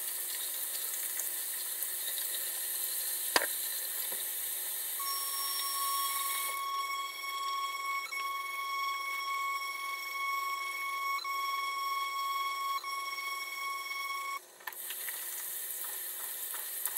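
Tap water running into a bathroom sink, with an electric facial cleansing brush humming in one steady high tone from about five seconds in until near the end, briefly stuttering a few times. A single sharp knock about three seconds in.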